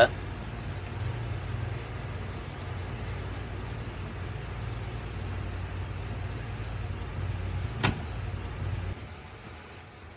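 Boat engine running steadily at low speed with a low hum. A single sharp click comes a little before the end, and about a second later the engine hum drops away and the sound falls off.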